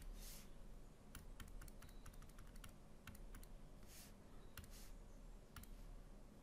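Faint, irregular clicks of a computer mouse and keys as an expression is edited on an on-screen calculator emulator, with two soft hisses, one near the start and one about four seconds in.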